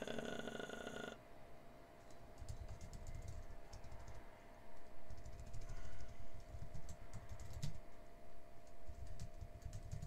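Typing on a computer keyboard, an irregular run of key presses starting about two seconds in, over a faint steady hum.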